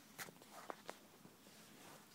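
Near silence with a few faint clicks and rustles of the camera being handled and moved.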